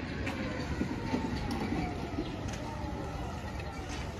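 A bicycle rolling over a rough paved street: a continuous rumble and rattle with scattered sharp clicks, and a faint falling whine in the middle.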